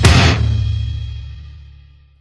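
The closing hit of a rock song, drums and cymbal together with the last chord, ringing out and fading steadily away to silence.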